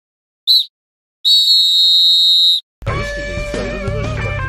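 Referee's whistle sound effect marking the end of the half: a short blast, then one long steady blast of about a second and a half. Electric guitar music starts near the end.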